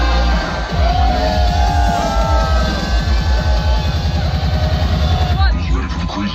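Loud electronic dance music from a DJ set over a concert sound system, a build-up of fast, repeated bass hits that breaks off near the end, with the crowd cheering over it.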